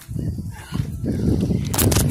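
Wind buffeting the microphone, a dense uneven low rumble, with one sharp knock near the end.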